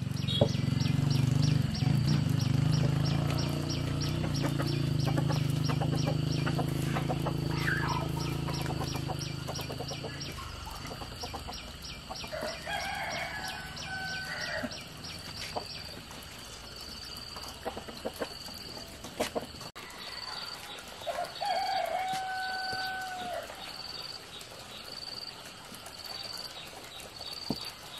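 Rooster crowing twice, about halfway through and again near the end, the second crow rising and then holding one long note. Under it runs a steady high pulsing insect chirp, and a low steady hum fills the first ten seconds, then fades.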